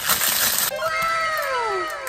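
Clear plastic wrap crinkling as it is pulled off a ceramic piggy bank, for under a second, followed by a drawn-out sound of several tones gliding downward together.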